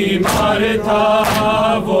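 A group of men chanting an Urdu noha (Shia lament) in unison, their voices held long and steady. A sharp beat falls about once a second, from hands striking in matam to keep time.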